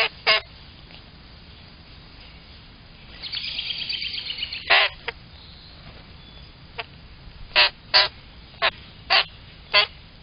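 Common grackles giving loud, harsh squawks: two right at the start, a fast chattering run about three seconds in, then squawks about every half second through the second half. The calls come from the brown young birds, beaks wide open, begging from the adults.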